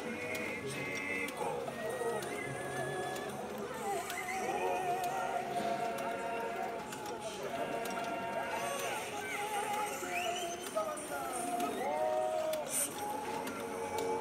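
Sound installation's loudspeakers, set in metal horns on antique Singer sewing machines, playing a layered mix of voice-like and musical sounds: many overlapping pitched tones that slide up and down, with scattered light clicks.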